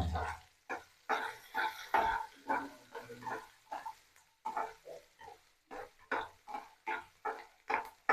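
Metal spatula scraping and stirring chopped onions and chillies around a kadai in short repeated strokes, about one or two a second.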